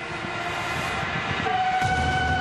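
Train running on the tracks, with a rumble and a steady high tone that grows stronger about one and a half seconds in.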